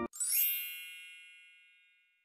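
A bright chime sound effect: a quick upward sparkle into a cluster of high ringing tones that fades out over about a second and a half. Background music cuts off just before it.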